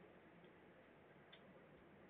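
Near silence: faint room hiss with two faint ticks about a second apart.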